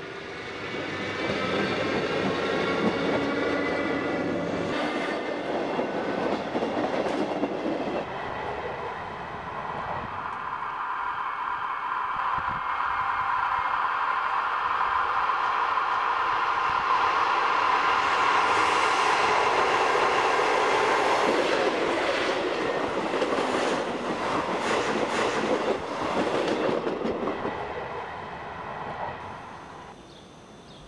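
ALe 582 electric multiple unit running along the line toward and past the trackside, with a steady whine from the train and a repeated clicking of its wheels over the rail joints. It is loudest a little past the middle.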